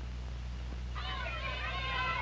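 Steady low hum and hiss of an old 16mm optical soundtrack; about a second in, several children's high voices start calling out and shouting at play, overlapping and getting louder.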